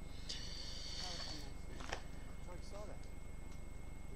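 Faint dialogue from the episode playing in the background, with a short hiss early on and a single click near the middle, over a steady electrical hum.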